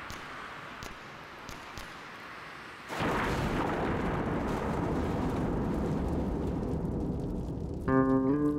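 A faint hiss with a few crackles, then about three seconds in a sudden, deep rumbling noise that holds for about five seconds. It fades a little just as plucked guitar music comes in at the very end.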